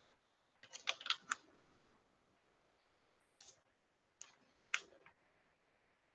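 Short, sharp clicks, as of computer keys: a quick run of about five about a second in, then a few more spaced out near the end, the loudest near the end.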